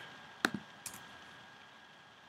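Two short clicks at the computer, a sharp one about half a second in and a fainter one just under a second in, over a faint steady high tone.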